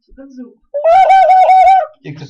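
A loud, high-pitched wavering vocal sound lasting about a second, its pitch wobbling about five times a second. A short, lower voice sound comes just before it.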